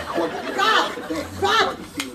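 Indistinct voices, speech-like chatter that cannot be made out as words, ending in a short laugh.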